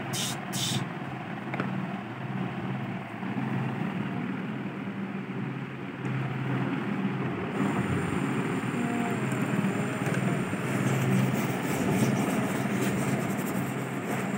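Small battery-powered water pump of a toy kitchen sink running with a steady hum, water pouring from the toy faucet and splashing into the plastic basin, with a plastic brush scrubbing plastic dishes.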